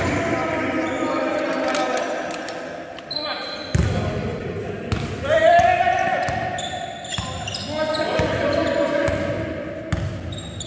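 Basketball bouncing on a hardwood gym floor as a player dribbles, with unclear shouting and calls from players echoing around a large indoor hall.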